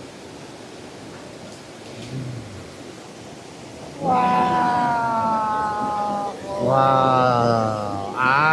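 Two long drawn-out vocal exclamations, each held for about two seconds and slowly falling in pitch, starting about halfway through. Before them there is only quiet background noise and a faint low murmur.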